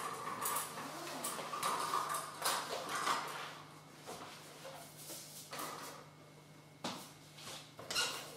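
Quiet handling sounds of a foil-covered cake board being slid across a tablecloth and lifted onto a cake turntable stand: light scrapes and small clicks, with a sharp knock near the end as it is set down. A faint steady hum runs underneath.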